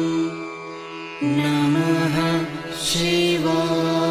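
Devotional chanting over a steady drone: long held notes, with a brief drop in level before the pitch changes about a second in, and a return to the first pitch near the end.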